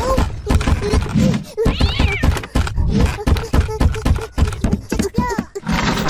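Rapid cartoon footstep sound effects of a small child's bare feet pattering on a wooden floor, several steps a second. Three short rising-and-falling calls come over them near the start, about two seconds in and about five seconds in.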